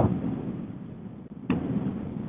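Telephone conference-call line noise in a pause between speakers: a fading hiss, then about one and a half seconds in a sudden rise of rumbling background noise as another caller's line opens.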